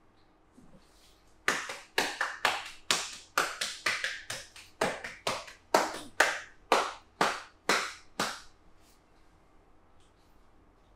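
Massage percussion: the masseuse's hands clapping down in quick succession, nearly twenty sharp slaps at two to three a second, starting about a second and a half in and stopping near the end.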